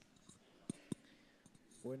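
Quiet hall room tone broken by two short knocks in quick succession, a fifth of a second apart, then a voice starting to speak near the end.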